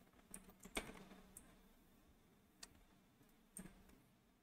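Faint computer keyboard keystrokes: a quick run of taps in the first second and a half, then a single tap and a last pair near the end.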